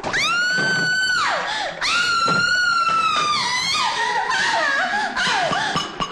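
A woman screaming twice in long, high, held screams, each falling away at its end, followed by lower wavering cries, with dramatic film music underneath.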